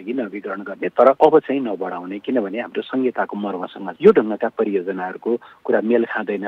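Speech: a man talking in Nepali without a break, in a thin, narrow-band recording.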